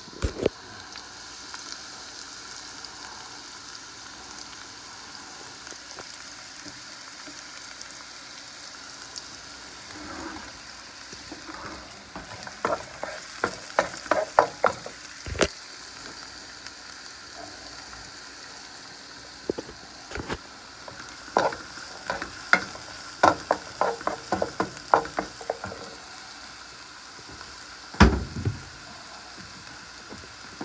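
Diced red onion sizzling steadily in oil in a nonstick frying pan. A wooden spatula stirs it in two spells of quick scraping and clicking, one midway and one in the second half, with one louder knock near the end.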